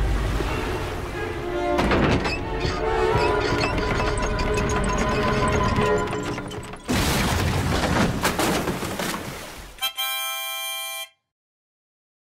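Dramatic orchestral film score that opens with a heavy low hit. About seven seconds in there is a loud noisy crash, and the music ends on a bright held chord that cuts off suddenly about a second before the end.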